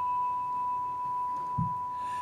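A struck altar bell rung once at the elevation of the chalice, holding one clear, steady ringing tone. A soft low thump comes near the end.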